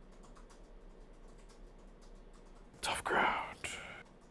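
Quiet room with a few faint clicks, then, about three seconds in, a short breathy burst of a person's voice, whispered rather than spoken, lasting under a second.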